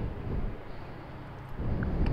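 Low, steady background noise, mostly wind on the microphone, swelling slightly near the end.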